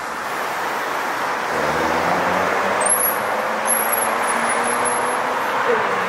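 City road traffic at an intersection: vehicle engines and tyres, louder from about two seconds in as a motor vehicle passes close with a steady engine hum.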